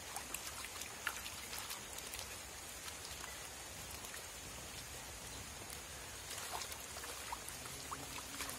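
Hands washing roots in a metal bowl of muddy water: scattered small splashes and drips, thickest in the first couple of seconds and again near the end.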